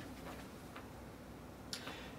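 Quiet room tone with a few faint, scattered ticks, and a brief sharper click near the end.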